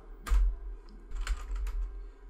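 Computer keyboard being typed on: a heavy keystroke about a third of a second in, then a few lighter, irregular keystrokes, each with a dull low knock.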